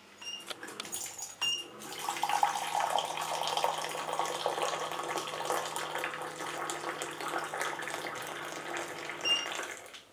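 Electric hot-water dispenser beeping as its button is pressed, then its pump humming as a stream of water pours into a ceramic mug for about seven seconds. It beeps again as the pour ends.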